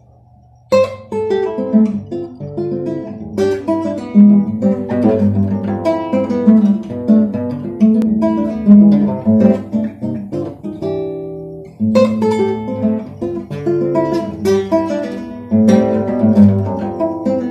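Solo acoustic guitar playing a Latin-jazz piece, a plucked melody over bass notes, starting just under a second in. The playing eases briefly about eleven seconds in, then picks up again.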